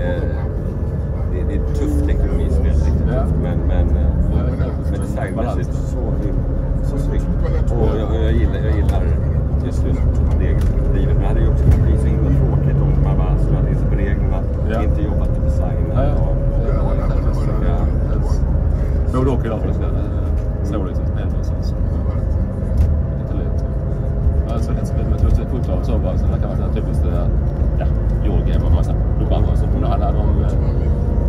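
Inside a rail-replacement bus on the move: a steady low engine and road rumble, with a whine that slowly rises and falls as the bus speeds up and slows. Passengers talk in the background.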